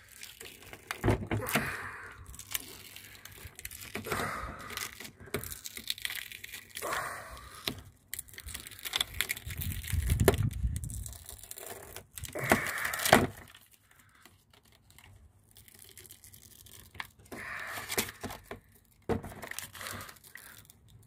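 Strips of adhesive tape being peeled off a window pane in several separate ripping pulls, with crinkling as the tape is handled.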